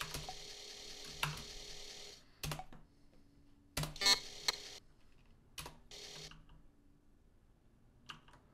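Computer keyboard keystrokes: several separate key clicks at uneven intervals, entering commands, over stretches of steady hiss that break off.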